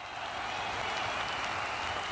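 Crowd applause, a dense steady clatter of clapping that fades in at the start and then holds level.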